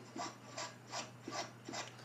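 Quick, faint scrubbing strokes of a hand abrasive on the metal of a paraffin heater's burner, about three strokes a second, cleaning off deposits so the flame rod can sense the flame.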